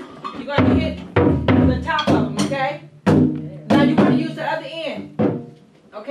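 Tall dundun drums struck with sticks in a handful of irregular single hits, each with a low, ringing boom, with voices talking between the strikes.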